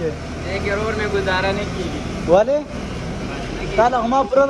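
Voices speaking, over a steady low hum.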